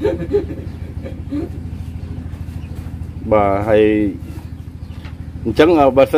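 A small engine running steadily at idle, a low even hum throughout. About three seconds in there is one drawn-out call, and speech starts near the end.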